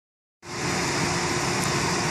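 Steady machine hum with a constant tone and hiss, starting abruptly about half a second in after silence.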